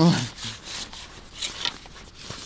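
Irregular rubbing and scraping handling noise, a string of short scrapes, as a landing net holding a small fish is lifted out of the water. A short spoken word comes at the start.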